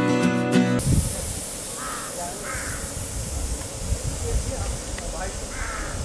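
Guitar music cuts off under a second in, leaving outdoor ambience over a low rumble. A bird calls twice with short harsh calls about two seconds in, and twice more near the end.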